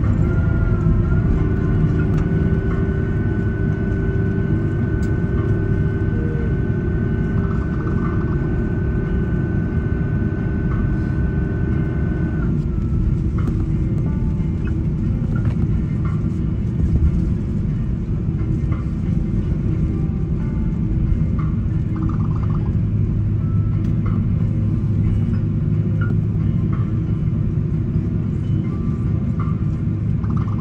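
Airbus A330 cabin rumble as the airliner rolls down the runway just after touchdown. A steady engine whine rides over it and stops about twelve seconds in, as the engines wind down after landing.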